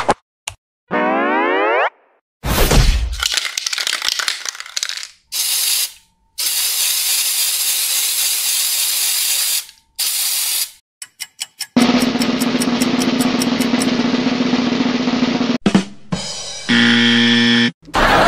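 A string of edited cartoon sound effects. A rising boing-like glide and a thud come first. A spray-paint can hisses evenly for about three and a half seconds, then a quick rattle follows, and near the end a short jingle of steady tones.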